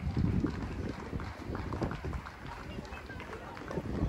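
Footsteps on a concrete path, with people's voices close by and an outdoor park hum.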